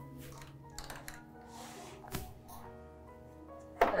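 Soft background music, with a few faint swishes and light knocks in the first half or so from hands working a flat-bed knitting machine and its yarn. A woman's voice begins just before the end.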